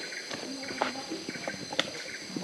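Rainforest insect chorus, a steady high-pitched drone with a short pulsing call repeating about every half second, over footsteps and crackling leaf litter on a dirt trail; one sharp click near the end.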